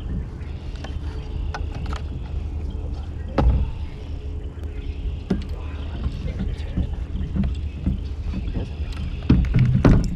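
Kayak paddle and gear handling: scattered clicks and knocks against the hull over a steady low rumble, with heavier thumps about three and a half seconds in and again near the end.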